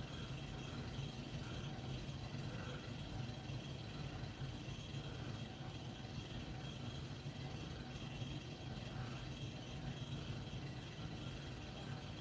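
Faint, steady low background hum, with no speech.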